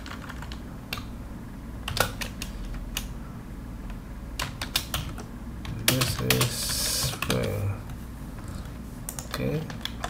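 Computer keyboard typing: scattered, irregular keystroke clicks as a short string is typed out.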